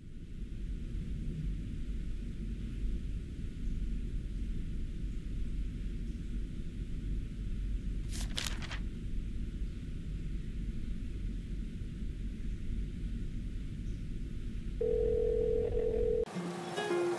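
Low steady room rumble, with a short papery rustle about halfway through as a lottery ticket is handled. About a second before the end a steady telephone call tone starts as a phone call is placed.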